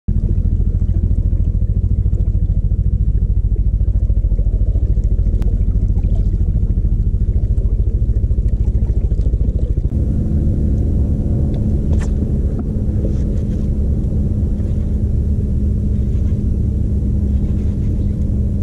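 Bow-mounted electric trolling motor running with a steady low rumble, its sound shifting about ten seconds in to a steadier hum, as if its speed changed. A couple of faint clicks are heard around five and twelve seconds in.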